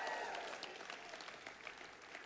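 A congregation's applause dying away, a dense patter of claps thinning out over two seconds.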